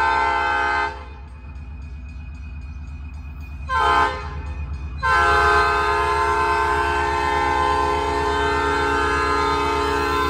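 Diesel locomotive's multi-note air horn sounding the grade-crossing pattern for an approaching train: a long blast ends about a second in, a short blast sounds near four seconds, then a long blast from about five seconds on. A steady low rumble of the locomotive runs underneath.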